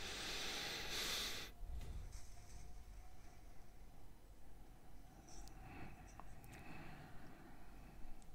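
A soft exhale, a breath of air lasting about a second and a half, followed by faint room tone with a low steady hum.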